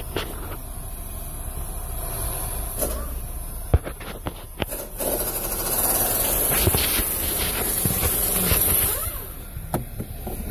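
Steady running noise of a car heard inside its cabin, growing louder for a few seconds past the middle, with a few sharp clicks and knocks.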